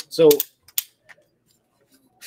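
Travel tripod clicking as it is handled: a few short, sharp clicks within the first second.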